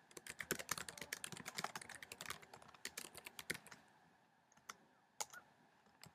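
Faint computer keyboard typing: a quick run of keystrokes for the first three and a half seconds or so, then a few single key presses.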